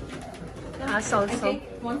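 Cuckoo clock calling its two-note 'cuckoo' from its bellows-driven pipes, a few short calls about a second in.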